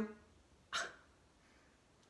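A single short breath, a quick puff of air heard about a second in, against low room tone.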